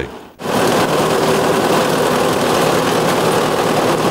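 Tractor engine running with its side-mounted boom mower cutting through tall weeds: a loud, steady mechanical din that starts suddenly about half a second in.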